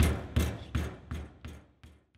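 Basketball being dribbled in a steady rhythm of about three bounces a second, fading out.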